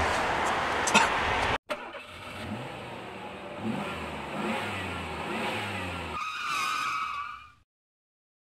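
A brief laugh over outdoor noise, then after a sudden cut a vehicle engine revving, its pitch sweeping up and down over a steady low hum. Near the end a higher, steadier tone comes in before the sound fades out.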